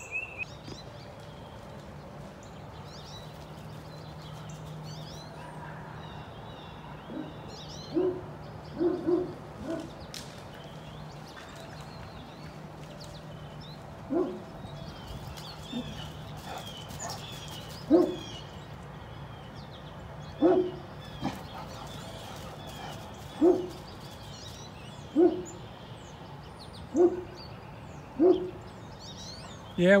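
Great Dane barking: deep single woofs, one every two seconds or so from several seconds in, some in quick pairs. Birds chirp in the background.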